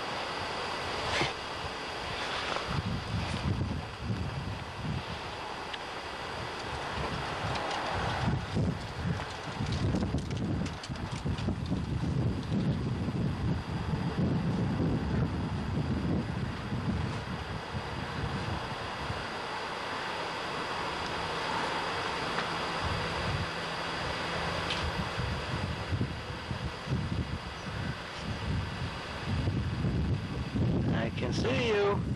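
Wind buffeting a camcorder microphone outdoors: an uneven, gusting low rumble that swells and drops, over a thin steady high whine.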